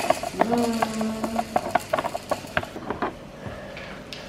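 Plastic measuring cup knocking and scraping against a plastic tub while scooping thick spaghetti sauce: a quick run of irregular clicks and knocks that stops about three seconds in. A short held hum from a voice sounds early on, about half a second in.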